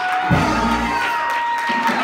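Live church music with a woman's voice carried over the microphone and the congregation shouting and cheering along, over long held tones.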